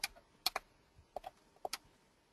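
Light, sharp clicks of a stylus tapping on a pen tablet as digits are handwritten onto the slide: about six irregular taps, some in quick pairs.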